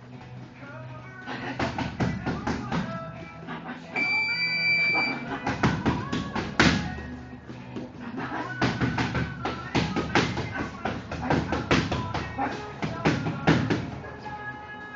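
Gloved punches smacking focus mitts in quick, irregular flurries of combinations, over background music.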